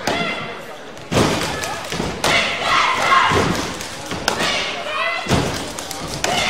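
Basketball play on a gym court: about four heavy thuds of the ball and players on the hardwood floor, with shouting voices between them.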